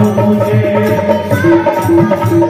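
Live devotional Hindi bhajan: male, female and boy voices singing together into microphones over a steady rhythmic percussion accompaniment.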